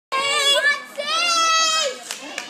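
A girl's high-pitched voice calling out twice, the second call drawn out and held.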